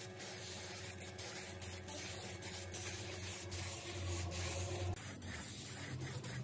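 Air spray gun hissing steadily as it sprays blue paint onto a motorcycle mudguard, over a steady low hum that changes about five seconds in.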